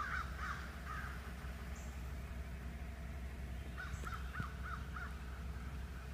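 A bird calling in two quick series of short, repeated, arched notes, one at the start and another about four seconds in, over a steady low hum.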